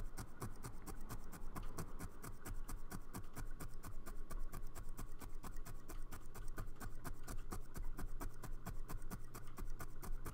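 A barbed felting needle jabbing rapidly through wool felt into the felting mat, about seven quick strokes a second, over a steady low hum.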